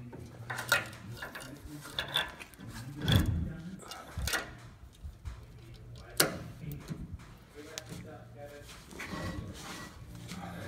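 Hand-handling noises from a 15,000-lb Dexter trailer axle hub as parts are worked into it: a few scattered sharp knocks and clicks, the loudest about three seconds in and again about six seconds in, over a low steady hum.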